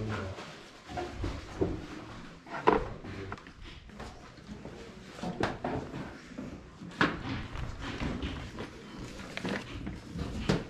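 Scattered knocks and clatters of objects being handled and moved about, the sharpest about two and a half, five and a half and seven seconds in.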